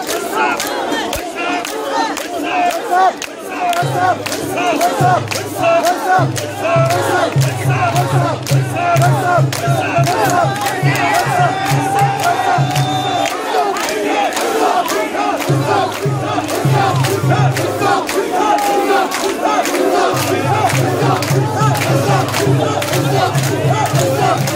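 A large crowd of mikoshi bearers shouting a rhythmic carrying chant in unison as they heave the portable shrine along. Many voices overlap, with a low pulsing beat underneath in stretches.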